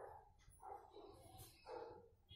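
Near silence: room tone with a few faint, short sounds spaced about half a second apart.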